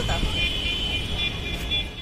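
Wind buffeting a handheld phone microphone outdoors as a steady, noisy low rumble, with a faint high-pitched tone held for nearly two seconds over it.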